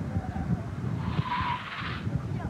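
Car tyres squealing briefly about a second in as the car corners hard through the autocross cones, over a low rumble.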